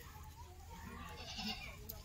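A goat bleating faintly, about a second in.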